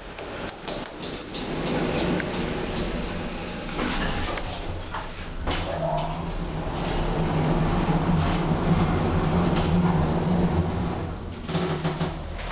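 A three-stage holeless telescopic hydraulic elevator travelling after a car button press: a steady low hum from the hydraulic drive, louder in the second half, with scattered clunks and clicks from the doors and car.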